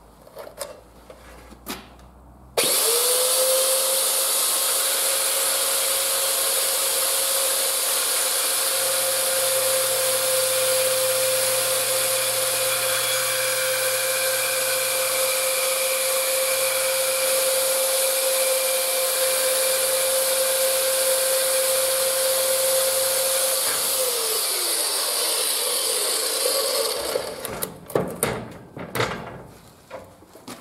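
A Parkside PMB 1100 A1 portable metal-cutting bandsaw with an 1100-watt motor is switched on about two and a half seconds in. Its blade cuts a workpiece clamped in a bench vise for about twenty seconds at a steady pitch. It is then switched off and winds down with falling pitch, with clatter from setting the saw down at the start and end.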